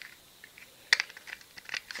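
Small plastic battery box being handled as its sliding cover is pushed closed: one sharp plastic click about a second in, then a few fainter clicks.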